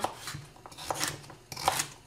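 Kitchen knife chopping a carrot on a wooden cutting board: a few separate cuts, each a short knock of the blade through the carrot onto the board.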